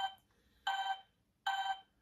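Hasbro Simon Micro Series electronic memory game sounding the same short beep twice, about a second apart: the blue pad's tone played two times in the sequence.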